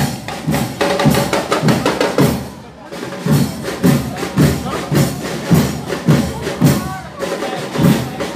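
Music with a strong, steady drum beat, about two to three beats a second; it drops away briefly about two and a half seconds in, then picks up again.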